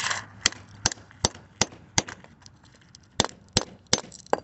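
Sharp metal knocks on the steel laminations of a microwave transformer core as it is worked apart: five in a quick, even run, a pause, then three more near the end.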